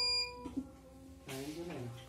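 Acoustic guitar's last note ringing as a clear high tone with overtones, stopped short about a quarter second in. Near the end comes a short vocal sound from a man.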